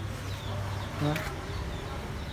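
A flying insect buzzing low and steadily close by, with a brief voice sound about a second in.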